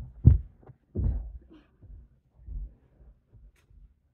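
Dull thuds of a child's feet and hands hitting a carpeted floor as she runs and jumps. The strongest thuds come at the start and just after, there is a longer one about a second in and a softer one later, and then it goes quiet apart from faint movement.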